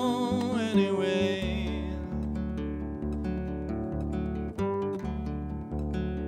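A man's sung note with vibrato that fades out about two seconds in, then a Cort cutaway steel-string acoustic guitar played alone: picked notes over a low bass note repeating about once a second.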